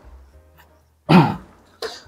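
A man clearing his throat once, a short voiced rasp about a second in, with a brief second burst of breath or throat noise near the end.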